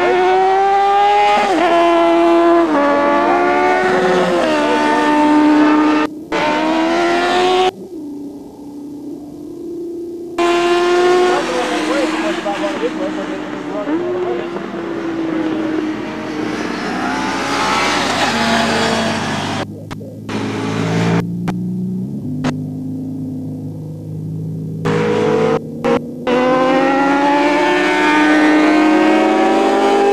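Racing sportbike engines at high revs passing on a road course, several overlapping: each engine note climbs and then drops back at every upshift. The sound cuts out briefly several times along the way.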